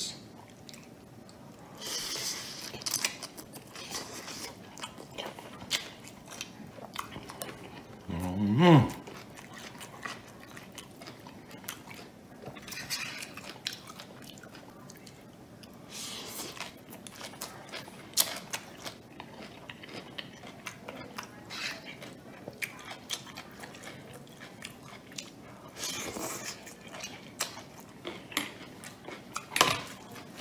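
Chewing and crunching of fried cabbage cooked to stay crisp, with light clicks of a metal fork on the plate. A short hum of approval comes about eight seconds in.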